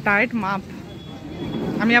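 A person's voice speaking a couple of short syllables, then more speech near the end, over steady background noise.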